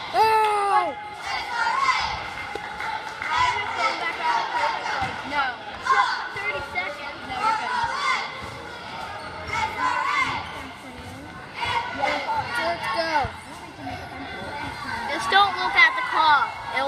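Basketball bouncing on a hardwood gym floor during a game, under spectators' voices and shouts across the gymnasium.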